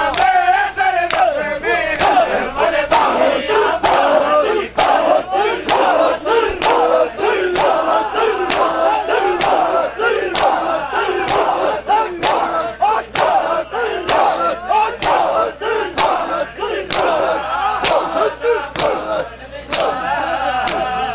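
Crowd of men performing matam: bare hands slapping their chests in unison, about two strokes a second, while many male voices call out together over the beat.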